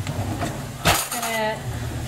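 A kitchen cutlery drawer being pushed shut, one sharp knock with a clink of cutlery about a second in, followed briefly by a woman's voice. A low steady hum runs underneath.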